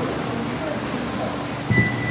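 1/10-scale radio-controlled touring cars running on a carpet track, a steady whir with faint wavering motor whine. A short high beep starts near the end.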